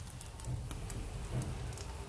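Egg-coated bread slice frying in oil in a pan: faint, scattered crackles and small pops of the hot oil.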